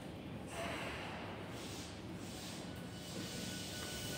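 Y500 series commuter train standing at an underground platform before departure, with a hiss of air rising about half a second in. A faint steady tone joins near the end.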